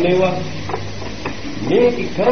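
A Buddhist monk's voice preaching a sermon in Sinhala, in short drawn-out phrases over a steady hiss from the old recording.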